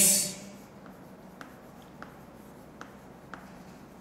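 Chalk writing on a chalkboard: a few faint, sharp taps and short strokes as a word is written out.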